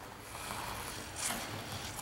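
Ice skate blades gliding and scraping on rink ice, a steady hiss with a louder scrape a little past the middle.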